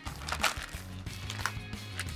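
Background music with a steady low bass, under a few faint crinkles and clicks of the plastic vacuum bag around a raw brisket being slit open with a knife.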